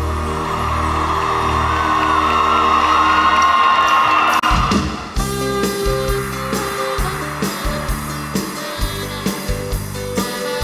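Live norteño band playing to a large crowd. For the first half, a held chord rings under the crowd cheering. About five seconds in, a new song starts with a steady, even beat.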